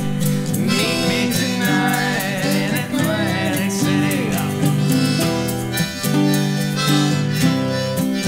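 Live acoustic band music: strummed acoustic guitars with a harmonica playing a bending melody line over them.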